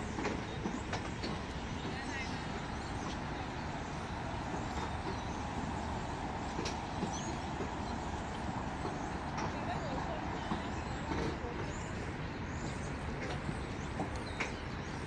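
Steady outdoor city background noise, mostly a low rumble like distant traffic, with scattered faint clicks and a few faint high chirps.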